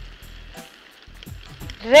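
Elbow macaroni and chopped vegetables sizzling faintly in a frying pan as ketchup is poured in.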